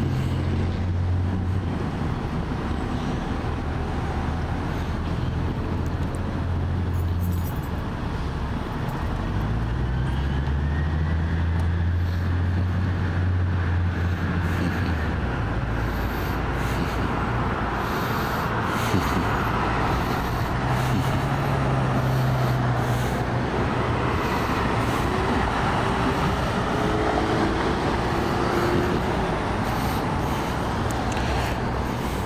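Steady road traffic noise from cars driving past on a multi-lane street, with the low engine hum of a passing vehicle rising in pitch about ten seconds in and another vehicle's hum about twenty seconds in.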